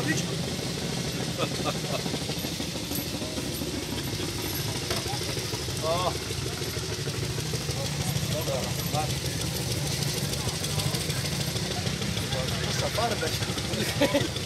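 Zündapp KS 750 sidecar motorcycle's air-cooled flat-twin engine idling steadily, with faint voices now and then.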